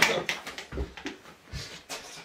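A person gagging into a plastic bucket held to the face, a loud burst at the start trailing off into weaker heaves, with a couple of dull knocks from the bucket.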